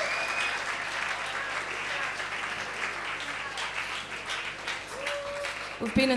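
Audience applause after a song at a small indie-pop concert, the clapping gradually dying down.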